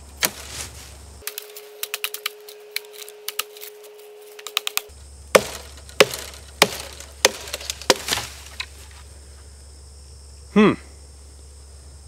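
KA-BAR Pestilence chopper's SK5 carbon-steel blade hacking into green salt cedar (tamarisk) branches: a string of sharp chops with wood cracking and splintering. The heaviest strikes come about every half second from about five to eight seconds in.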